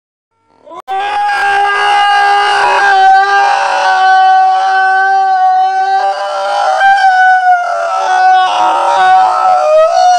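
A man's long, loud scream held on one high pitch almost without a break, starting about a second in, wavering and dipping briefly in pitch near the end.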